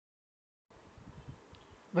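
Silence, then faint microphone hiss and room noise from about two-thirds of a second in, with a few faint low bumps.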